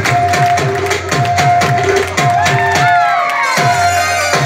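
Live Pashto folk music: a harmonium holds steady notes over a quick, even drum beat of about three strokes a second, while the crowd cheers.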